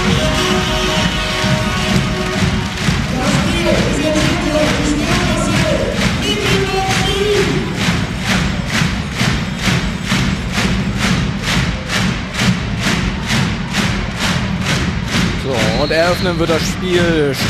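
Arena music and crowd noise at a volleyball hall, with sustained notes and some voices early on. About halfway through a steady beat of about three strokes a second sets in.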